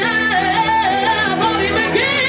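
A woman singing loudly through a microphone in held, wavering notes, accompanied by two guitars, one of them acoustic, playing sustained chords.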